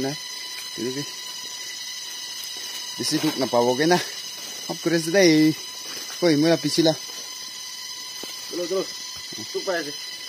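A man talking in short phrases, with pauses between them, over a steady high-pitched whine with even overtones that never changes.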